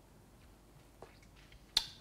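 Near silence of room tone, with a faint tick about a second in and one sharp click near the end.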